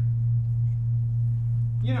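A steady low electrical hum on the recording, one unchanging tone, with a man's voice starting to speak near the end.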